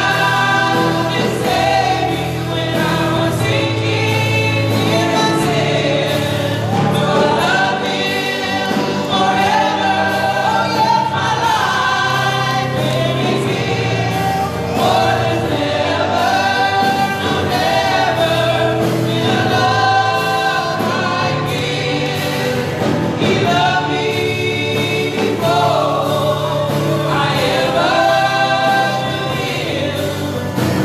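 A worship team of several singers, mostly women's voices, singing a gospel praise song together over instrumental accompaniment with sustained low notes.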